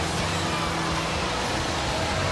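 Combat robots fighting in the arena: a steady mix of drive motors and spinning weapon discs with a low, even hum, over the show's background music.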